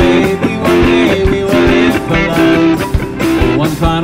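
Live rock band playing: electric guitars, bass and drums together, with repeated guitar chords over a steady drum beat.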